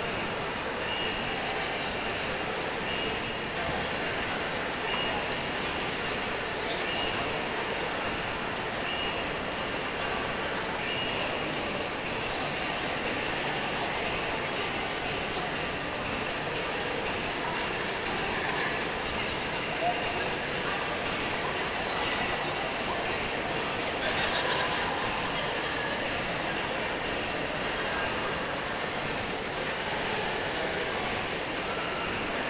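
A steady, even rush of indoor background noise with a murmur of distant voices. Faint short high tones repeat about every two seconds during the first ten seconds or so.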